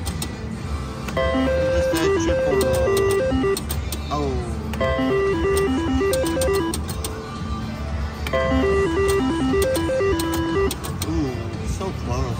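IGT Triple Stars reel slot machine spinning three times in a row, each spin playing a run of stepped electronic beeping tones with clicks as the reels turn and stop, over a steady casino background hum.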